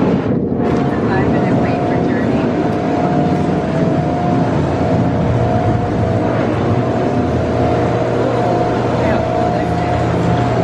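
Steady loud din of an indoor boat ride, a constant hum under it, with people talking over it.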